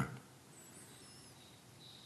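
Faint, high-pitched bird chirps over quiet background hiss. A thin, steady high note joins from about a second and a half in.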